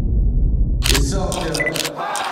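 Deep bass of music dying away, then from about a second in a quick run of camera shutter clicks, four or so, with short electronic beeps, over people's voices.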